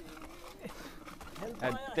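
Quiet outdoor background for most of the moment, then a person's voice starting near the end.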